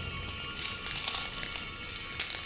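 Shards of broken bottle glass crunching and clinking under bare feet in a few short crunches, over steady background music.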